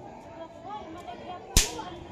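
A single sharp crack about a second and a half in, sudden and loud and dying away quickly, over faint background voices.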